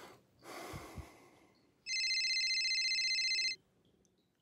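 A telephone rings once, a high, rapidly warbling electronic ring lasting under two seconds, starting about two seconds in.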